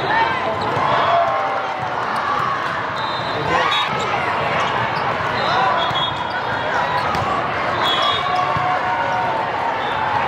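Echoing hall of a volleyball tournament: a wash of players' and spectators' voices with the thuds of volleyballs being hit and bounced on several courts. Short high whistle blasts sound about three seconds in, again past five seconds and near eight seconds.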